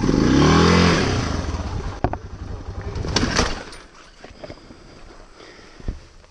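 A single-cylinder 650 dual-sport motorcycle engine revving up in rising pitch as it climbs over loose rock, with clattering knocks about two and three seconds in. The engine then cuts out a little past halfway as the bike goes down and stalls, leaving only faint background sound.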